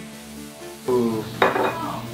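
Beer poured from a bottle into a pint glass, fizzing, with a sharp clink about one and a half seconds in, over background music.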